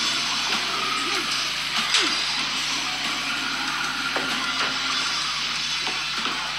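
Loud music with guitar.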